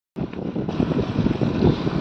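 Motorcycle riding noise: wind buffeting the microphone over the motorcycle running along the road. It starts abruptly just after a short silent break.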